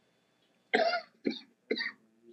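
A person coughing three times in quick succession, starting a little under a second in.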